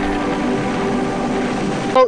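Intro music of sustained, droning held notes over a rushing noise bed, cutting off abruptly at the end.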